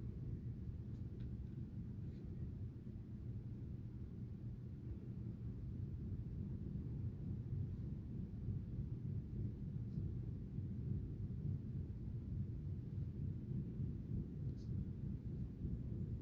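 Steady low rumble of room background noise, with a few faint clicks.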